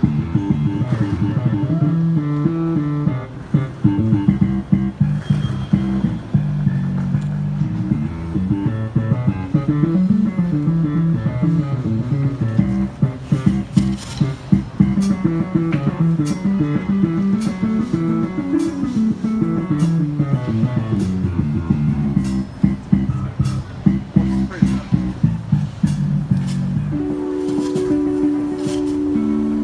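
Live band playing an instrumental groove on a drum kit and electronic keyboards: a moving bass line under the kit's beat, with sharp drum and cymbal strokes standing out from about halfway through. Near the end it settles into a held chord.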